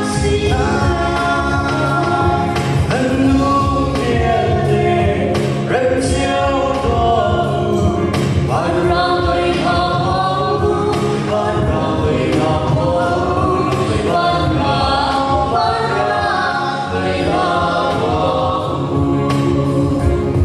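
Choir singing a Christmas gospel song in the Lai language over an instrumental backing with a steady beat.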